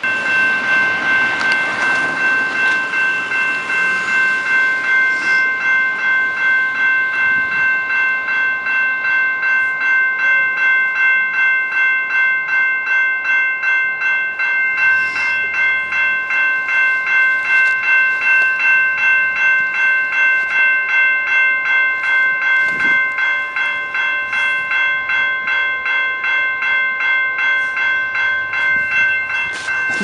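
Level-crossing warning bell ringing in even, rapid strokes, about two a second, signalling that the crossing is activated for an approaching train.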